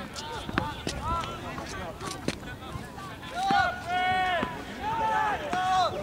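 Voices of players and spectators shouting and calling across a soccer field, with two longer drawn-out calls in the second half and a few faint sharp knocks.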